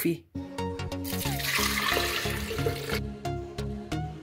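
Background music with a steady beat. About a second in, boiled cauliflower and its cooking water pour into a plastic blender jar with a rushing splash that lasts about two seconds.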